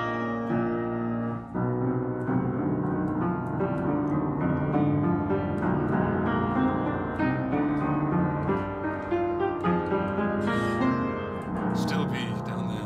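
Upright piano played with both hands: slow, held chords in the middle and low register, with new chords and notes struck every second or so and a busier run of notes near the end.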